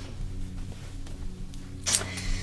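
Soft background music with a steady low drone, under a pause in the talk; a brief rustle near the end.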